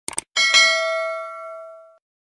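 Subscribe-button animation sound effect: a quick mouse double-click, then a bright notification bell ding that rings and fades away.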